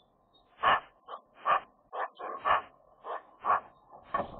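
Eurasian magpie calling: a quick series of about eight short, rough calls, irregularly spaced at about two a second.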